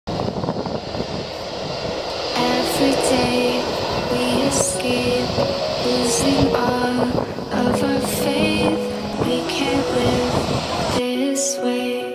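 Background music with a gentle melody that enters about two seconds in. Under it is the steady running noise of a Boeing 787-8's Rolls-Royce Trent 1000 jet engines as the airliner taxis. The engine noise cuts off about a second before the end, leaving only the music.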